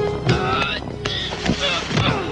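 Cartoon soundtrack of a scuffle: short vocal grunts and cries with a few sharp hits, over background music.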